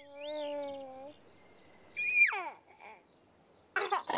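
A baby cooing with a held note, then a loud high squeal that slides down in pitch about halfway through, and giggling near the end, with faint high bird-like chirps behind.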